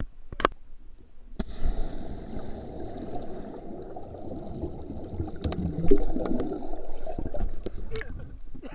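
A person and a hand-held camera plunging into lake water: a splash about one and a half seconds in, then muffled rushing and bubbling of churned water heard from under the surface for about six seconds. The camera breaks back through the surface near the end.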